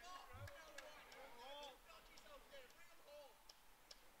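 Near silence on an open ballfield: faint, distant voices, likely players or spectators calling out, with a few soft clicks.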